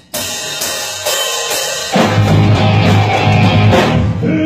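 Rock band starting a song, heard through a phone's microphone: drums and crash cymbals at first, then the full band with bass and electric guitar comes in louder about halfway through.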